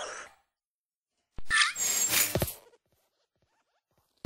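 Sound effects for an animated hopping desk lamp: a sharp click about a second and a half in, a short squeaky creak, then a rustling noise with a soft thud.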